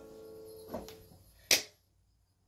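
The last keyboard chord of the song fading out, a short yell, then a single sharp hand clap, the loudest sound, after which the sound cuts off abruptly.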